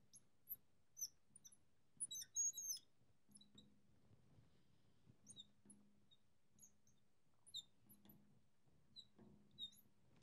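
Faint, high, short squeaks of a marker writing on a glass lightboard, coming every half second or so, with a louder cluster of squeaks about two seconds in.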